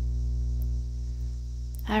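Steady low electrical mains hum in the recording, running unbroken under the pause. A spoken word begins right at the end.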